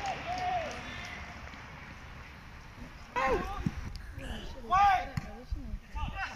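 Men shouting across an open football pitch: a short call at the start, then two loud drawn-out shouts about three and five seconds in, the second the loudest, over a low outdoor background.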